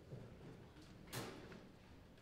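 Near silence: faint room tone with a soft knock about a second in.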